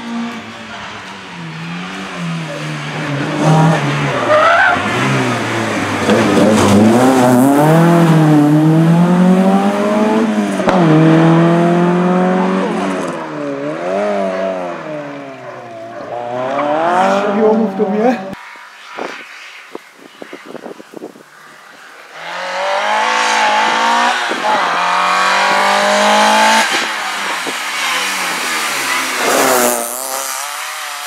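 Opel Astra GSi rally car's engine revving hard, its pitch climbing and dropping again and again through gear changes and braking. About two-thirds of the way through the engine sound falls away for a few seconds, leaving only scattered sharp crackles, then comes back revving.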